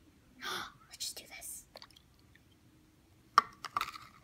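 Soft whispering and breathy sounds, then a sharp click about three and a half seconds in, followed by a few lighter clicks, from small plastic cups being knocked and set down on a plate.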